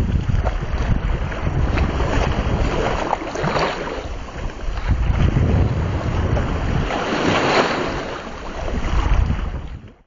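Wind rumbling on the microphone over the wash of sea waves, swelling and easing a few times.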